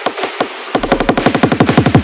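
Drum and bass build-up: a repeated electronic drum hit that speeds up about two thirds of a second in into a fast roll of roughly fifteen hits a second, with a deep bass under the roll.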